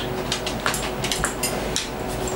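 Scattered short clicks and taps, typical of eating and utensil handling, over a steady low hum of kitchen room noise.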